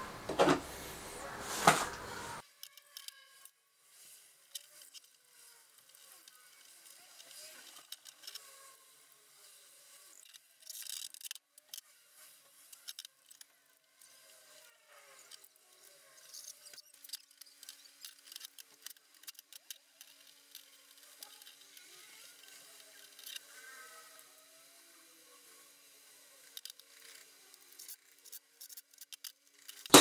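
Faint, scattered clicks and light knocks of small metal fittings and a gantry plate being handled on a workbench while Acme nuts are fitted to a CNC router's X-axis plate.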